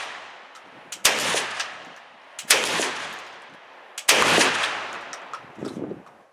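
12-gauge Browning Auto 5 long-recoil semi-automatic shotgun firing slugs: three shots about a second and a half apart, each followed by a long echo. The action cycles each round.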